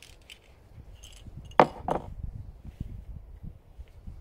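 Metal hand tools being handled: faint clinks, then two sharp metallic clacks close together about a second and a half in.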